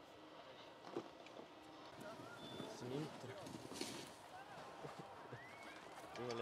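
Faint, distant voices of people talking, with a few light knocks and a low background hiss.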